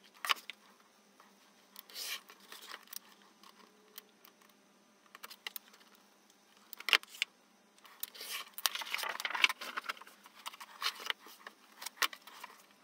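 Light clicks and taps of a steel rule and pencil handled on manila card over a cutting mat, then from about eight seconds in a few seconds of scratchy scraping as a blade cuts a strip of the card along the rule.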